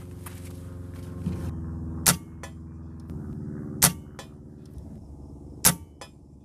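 Three shots from a .177 Benjamin Marauder Gen 1 pre-charged pneumatic air rifle firing 12.5-grain NSA slugs, tuned below 12 ft-lb for low velocity. The shots come about two seconds apart over a steady low hum.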